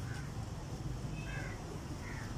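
A few short, faint, high animal calls over a steady low hum.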